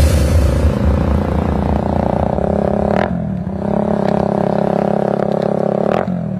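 Electronic dance music in a breakdown: a steady, buzzing engine-like drone holds one chord, with a short sweep about three seconds in.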